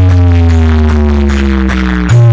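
Very loud electronic bass music from a DJ sound-box speaker rig. A deep bass note is held under slowly falling tones, with regular high ticks about two or three times a second, and the bass drops away briefly near the end.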